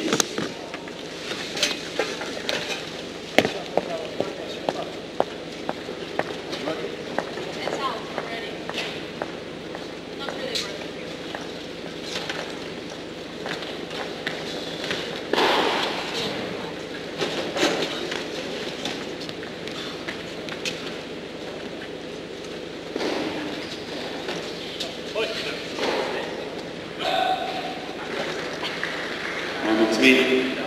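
Tennis balls bouncing on an indoor hard court between points: scattered sharp knocks over the hum of the hall, with faint voices.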